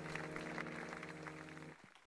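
Audience applauding over the last held chord of a gospel song. The chord stops near the end as the applause fades.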